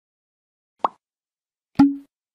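Two short pop sound effects from an animated title intro: a sharp pop a little under a second in, then a louder hit near the end with a brief low tone ringing after it.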